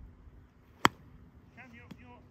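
A golf club strikes a ball once: a single sharp click just under a second in.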